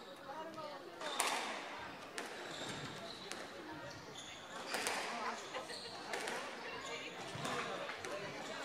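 Squash rally: the ball is struck by rackets and cracks off the court walls several times, with sharp hits about a second in and around the middle, echoing in the court. Short squeaks of shoes on the wooden floor come between the hits.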